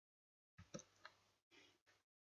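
Computer keyboard typing: a few faint key clicks, starting about half a second in after a moment of dead silence.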